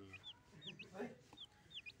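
Chicks peeping faintly: short, high, falling cheeps, several in quick pairs.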